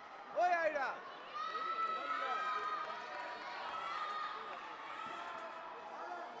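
An announcer's voice whose words are not made out: a short rising-and-falling call about half a second in, then a long stretch of drawn-out tones that lasts to the end.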